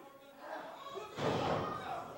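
A heavy thud of an impact between wrestlers in the ring about a second in, over people's voices.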